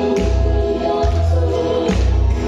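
Amplified live music over a PA: a woman singing into a microphone over accompaniment with a heavy bass line.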